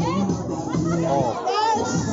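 Music played over a loudspeaker, with onlookers' voices and children's high-pitched shouts over it, loudest about a second in.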